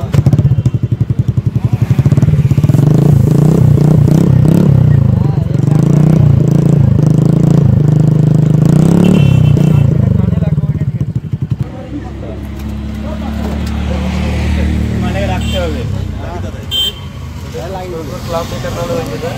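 TVS Ntorq 125 scooter's single-cylinder four-stroke engine running through an aftermarket silencer held to the exhaust outlet, loud and shifting in pitch as the throttle is worked, then dropping to a quieter steady idle about twelve seconds in.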